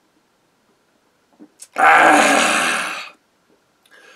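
A man's loud, rasping breath out, lasting about a second, just after draining a mug of beer in one go, following a couple of faint clicks from the glass or swallowing.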